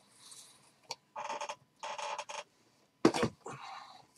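Shrink-wrapped cardboard hobby boxes being slid and stacked on a table: a few short scraping rubs of wrapped box against box, then a sharp knock as a box is set down about three seconds in, followed by another brief scrape.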